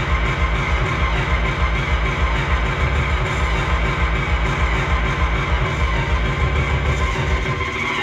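Loud amplified electronic dance music with a heavy pulsing bass, played over a carnival float's sound system.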